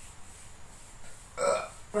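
One short burp about a second and a half in.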